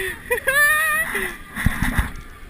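A man's excited wordless shouting and whooping while he fights a hooked fish, with a few low thumps near the end.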